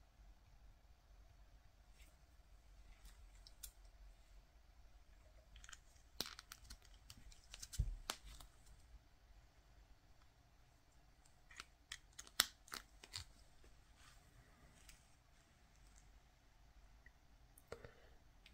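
Faint clicks and small handling noises of USB charging cables and their plugs being handled and pushed into ports, in a cluster about six to eight seconds in and another around twelve seconds; otherwise near silence.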